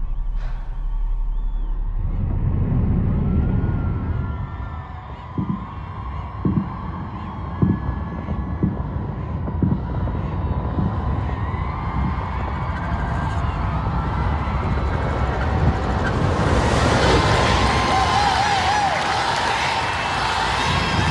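Instrumental passage of a pop song with no vocals: a low, dense bed under a few held tones, with a soft low beat about once a second coming in around five seconds in, and the arrangement growing fuller and brighter in the last few seconds.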